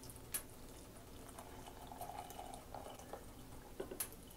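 Hot water poured from a stainless steel kettle into a ceramic mug, a faint splashing fill, with a short tap just after the start.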